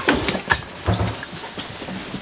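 Rustling of a padded winter jacket and shuffling steps as shoes come off in a hallway, with a sharp click about half a second in.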